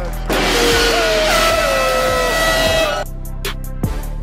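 A large hanging gong struck once with a mallet: a loud crash that rings on with a shimmering wash for nearly three seconds, then cuts off abruptly. Hip hop music with a steady beat plays underneath.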